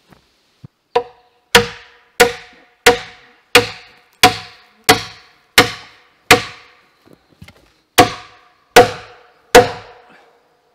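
A hand tool swung overhead striking a peeled log in a steady series of heavy blows, about one every 0.7 seconds, with a short pause near the seven-second mark before three more strikes. Each blow has a brief ringing after it. The first blow is lighter than the rest.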